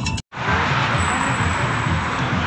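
Music cuts off abruptly at the start, then steady outdoor street noise with traffic fills the rest.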